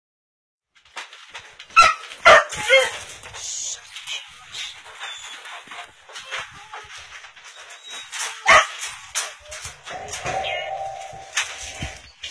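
Dogs in wire crates barking: a quick run of three loud barks about two seconds in and another single bark around eight and a half seconds, over lighter rattling and yips. Near the end a steady high tone holds for over a second.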